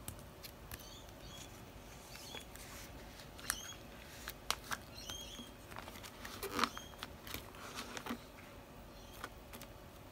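Photocards and clear plastic binder sleeves being handled: soft crinkles, rustles and light taps as a card is slid into a sleeve and the pages are pressed flat, busiest around the middle.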